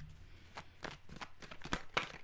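Tarot deck being shuffled by hand: a string of light, irregular card clicks and flicks, with a slightly sharper click near the end.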